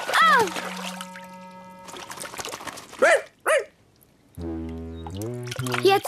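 Cartoon dog barking twice in quick succession about halfway through, after a splash and a short yelp at the start. Light children's music holds a note early on and starts a new phrase near the end.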